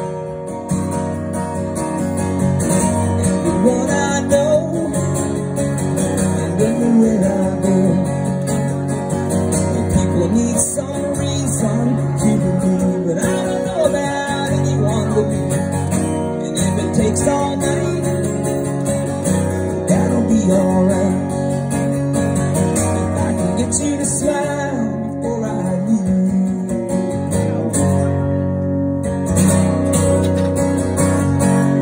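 Acoustic guitar strummed steadily, played solo.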